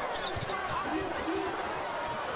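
A basketball being dribbled on a hardwood court, its bounces thumping under the noise of a packed arena crowd of many shouting voices.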